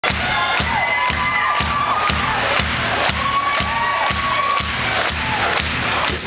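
Live rock band playing the opening of a song, with a steady beat of about two thumps a second, while the crowd cheers and shouts over it.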